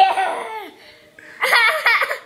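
A toddler laughing in two bursts: a laugh that falls in pitch at the start, then a quick run of high giggles about a second and a half in.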